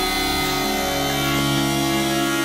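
Background music with sustained synthesizer-like tones and held notes.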